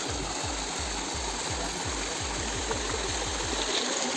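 Stream water gushing steadily over rocks in a small cascade, with a fast, low pulsing throb underneath that stops just before the end.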